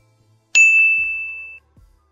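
A single bright electronic ding, the chime sound effect of a subscribe-button animation. It strikes about half a second in and rings out, fading over about a second.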